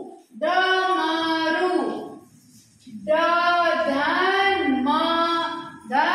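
A voice chanting in a sing-song tune, in two phrases with a short pause between them.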